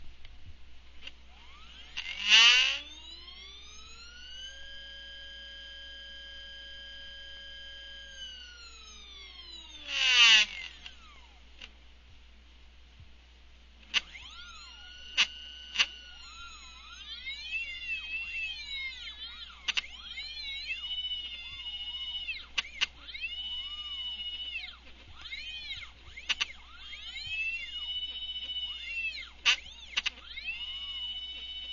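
Unloaded stepper motors bolted to a steel plate, whining as they run a G-code program. First a rapid move: the pitch rises as the motors accelerate, holds, then falls as they slow down. Brief loud buzzes at the rise and at the fall are the plate rattling as the motors pass through their resonant band. From about halfway on there is a quick run of short whines rising and falling in pitch as the axes trace the curves.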